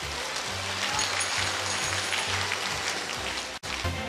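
Audience applauding, a dense even clatter of many hands, with music playing underneath on a steady low bass line. The sound drops out for an instant near the end.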